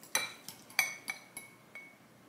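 Metal spoon clinking against a ceramic bowl while scooping out filling: about six light clinks, each with a short ring.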